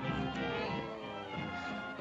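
Orchestral cartoon score music, with several instruments sounding held notes together and a few notes sliding in pitch near the middle.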